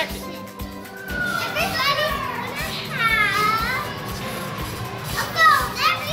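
A toy film clapperboard snaps shut once at the very start. Then children's high voices call out without words, sliding up and down in pitch, over faint background music.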